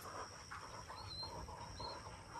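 A retriever panting hard, quick rhythmic breaths about four a second, with a steady thin high-pitched tone behind it and two short high chirps near the middle and the end.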